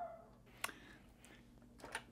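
Quiet room with a single faint click a little over half a second in and two light ticks near the end: small handling knocks at a worktable.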